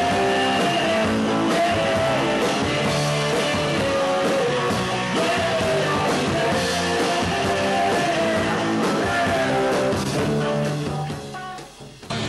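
Rock band playing electric guitar and drum kit, fading out over the last second or so.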